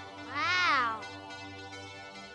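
A young woman's voice in one drawn-out wordless exclamation of amazement, its pitch rising and then falling, lasting under a second, over soft background music.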